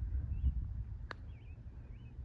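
A putter striking a golf ball: one short, sharp click about a second in. Under it runs a low wind rumble on the microphone, with a few faint bird chirps.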